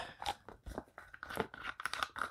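Soft plastic water bag crinkling and crackling as it is handled, with irregular light clicks from its plastic slide-bar closure.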